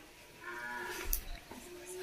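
A faint, drawn-out call in the background, about a second long and held on a steady pitch.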